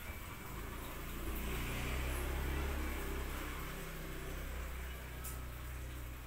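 Calico kitten purring: a steady low rumble that swells about a second in and eases off again.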